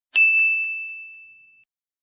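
A single bright ding, a bell-like chime sound effect that rings and fades away over about a second and a half. Two faint taps follow just after the strike.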